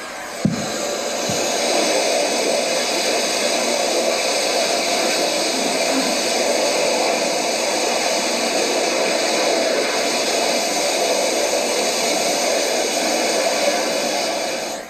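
Rocket thruster combustor firing in a vertical captive hot-fire test, a steady rushing roar played back through loudspeakers; it starts about half a second in and holds unbroken.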